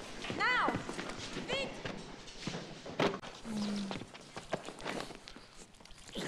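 A war drama's soundtrack: a short line of dialogue and two loud, high cries that rise and fall in pitch in the first two seconds, over scattered knocks and footsteps, with one sharp knock about halfway through.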